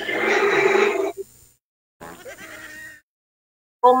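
One drawn-out pitched vocal sound lasting about a second, then a fainter one about two seconds in.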